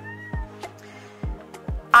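A cat meows once, briefly, right at the start, a short call that rises and falls in pitch. Background music with a steady beat plays underneath.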